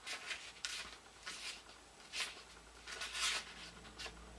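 Paper pages of a book being leafed through and handled: a series of short, soft rustles every half second or so.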